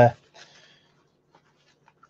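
The tail of a spoken word, then a faint, brief rustle of a lightweight nylon jacket being handled close to the microphone, with a few tiny clicks; otherwise quiet.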